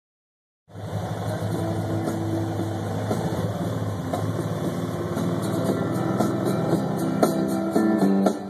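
A car engine's steady low hum inside the cabin, with guitar music playing along. Plucked guitar notes stand out more clearly near the end.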